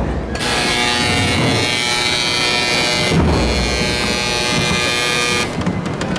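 A loud, steady hiss that starts suddenly about half a second in and cuts off suddenly near the end, over sustained held tones of band music.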